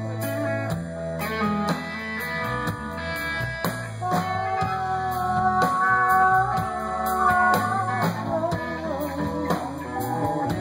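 Live blues-rock band playing a cover of a rock song: electric guitar over bass and drums in a steady beat, with a held, wavering lead melody on top.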